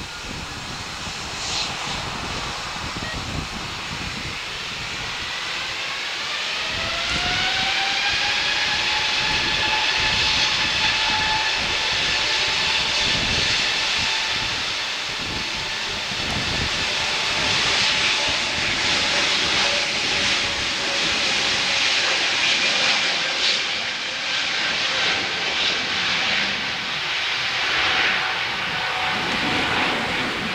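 Airbus A320neo's Pratt & Whitney PW1100G geared turbofans spooling up to takeoff thrust: a whine of several tones that rises in pitch over a few seconds, then holds steady over a loud rush of jet noise as the airliner accelerates down the runway.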